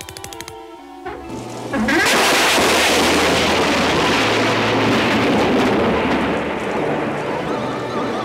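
A cartoon sound effect of a loud gust of wind rushing through an open window, starting suddenly about two seconds in and slowly dying away, over dark background music.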